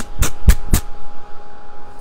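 Plaid cloth being torn by hand along its thread lines: a few quick, sharp ripping snaps in the first second, then quieter rustling as the tear finishes.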